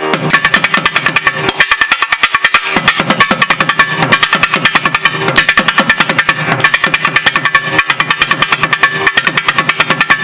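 Thavil, the South Indian barrel drum, played solo in a fast, dense rhythm of sharp strokes from thimble-capped fingers, about ten a second. Deeper strokes underneath drop out for about a second around two seconds in, then return.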